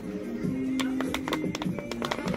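Background music playing, with a run of short, light clicks over it: a toy's Try-Me button being pressed again and again while the toy itself makes no sound.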